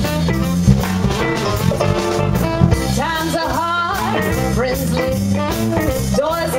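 Live band music: electric guitars, bass, drums and saxophone playing a blues-flavoured number with a steady beat, and a lead melody line that slides and bends in pitch.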